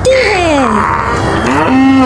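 Buffalo lowing: a long moo that falls in pitch, then a shorter one that rises and holds steady near the end.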